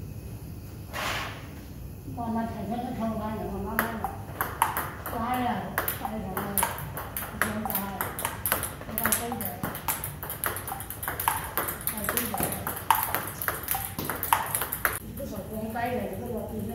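Table tennis ball being hit back and forth: sharp hollow clicks off the rubber-faced paddles and the table, several a second, starting about four seconds in and stopping shortly before the end.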